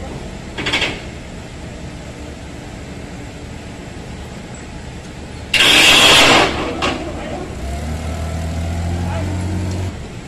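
Toyota forklift engine running with a low drone that becomes a steadier, stronger hum about eight seconds in as the machine works. A loud hissing burst lasting about a second comes just past the middle.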